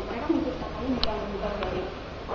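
Low, muffled voices talking, with two light clicks about a second in and again about half a second later.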